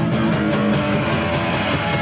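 New York hardcore punk band playing live: a loud, guitar-driven passage with no singing.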